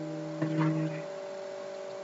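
Steady electrical hum of a recording setup, with several fixed tones. About half a second in, a soft, level-pitched vocal sound is held for about half a second: the lecturer's drawn-out hesitation.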